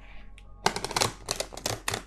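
A deck of tarot cards being shuffled by hand: a quick run of crisp flicking clicks that starts about two-thirds of a second in and keeps going.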